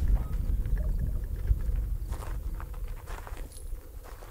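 Wind buffeting the microphone: a low, uneven rumble that eases off over the second half, with a few faint clicks or knocks between two and three and a half seconds in.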